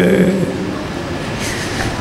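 A man's chanted voice through a microphone breaks off just after the start, leaving a steady rushing noise that lasts until his chanting resumes at the very end.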